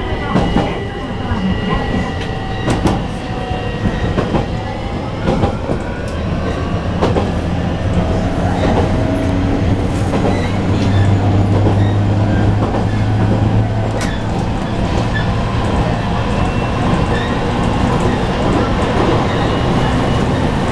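JR Kyushu 815 series electric train running along the track, heard from the driver's cab: steady rumble of the running gear with a motor whine and scattered clicks as the wheels pass over rail joints.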